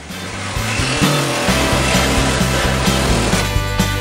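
Reciprocating saw (Sawzall) cutting the edge of the truck's body panel, with background music that comes in with a steady beat about a second and a half in and grows to fill the sound near the end.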